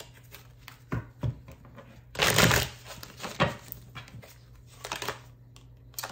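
Tarot cards being handled and shuffled: scattered soft card flicks and taps, with one longer, louder rustle of the deck about two seconds in.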